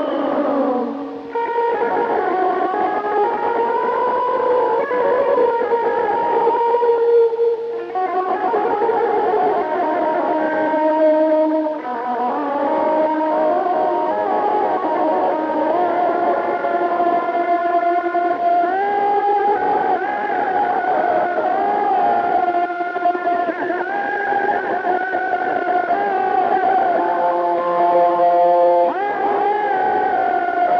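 Electric guitar playing an Azerbaijani wedding-music (toy) melody in phrases, with sliding pitch bends and quick ornamented runs.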